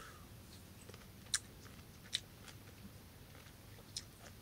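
A man quietly chewing a peeled segment of Palestinian sweet lime, with three short crisp clicks.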